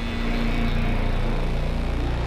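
A steady low rumble with a fast, even pulse, like a motor running.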